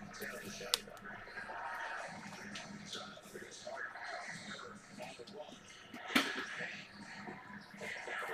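Faint background voices and music, like a television broadcast, with two sharp clicks of cards being handled, about three-quarters of a second in and again about six seconds in.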